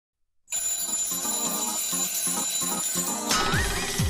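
Electronic theme music for a TV programme opening. After a moment of silence it starts with a bright, ringing, bell-like phrase, then about three seconds in a dance beat with a heavy kick drum and a rising swoop comes in.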